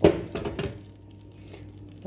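A sharp clatter of kitchenware, followed by a few lighter clinks within the next half second, then quiet.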